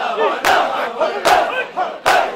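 A crowd of men doing matam, beating their chests with their open hands in unison: a loud collective slap about once a second, with a mass of men's voices shouting between the strikes.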